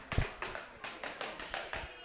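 A quick run of light taps, about eight or nine in two seconds, unevenly spaced, the first ones slightly louder.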